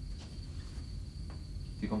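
Crickets trilling steadily as night-time ambience over a low hum; a woman's voice begins near the end.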